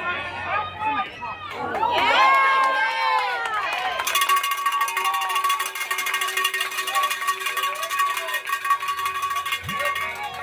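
High-pitched children's voices shouting and cheering for the first four seconds, then music with held tones and a fast, steady beat from about four seconds in that stops near the end.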